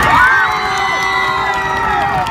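Crowd of spectators cheering and yelling, many voices at once with long held shouts.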